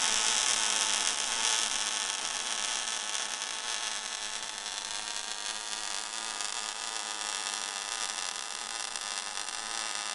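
ESAB EM 210 MIG welder's arc burning steadily on steel, a continuous crackling hiss that eases slightly in loudness over the first few seconds. It is set at 18.5 volts and 280 inches per minute wire feed with inductance at five, a setting that throws a lot of spatter.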